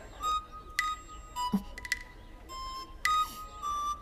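Soft background music of short, separate notes picked out one after another.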